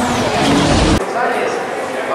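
A loud burst of noise with a deep rumble from a logo sting, cut off sharply about a second in. It gives way to the hubbub of a pit garage with indistinct voices.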